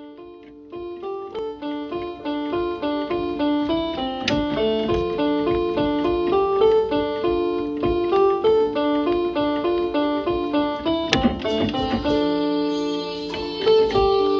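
Solo instrumental melody played by hand in quick, evenly paced notes on an instrument with a plucked or keyboard-like tone, starting soft and growing louder over the first few seconds. Two sharp clicks cut in, about four seconds in and again about eleven seconds in.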